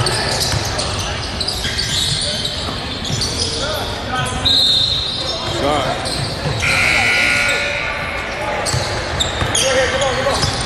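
Basketball game in a large gym: a basketball bouncing on the court, with indistinct voices echoing around the hall. A couple of short high-pitched tones cut in about halfway through.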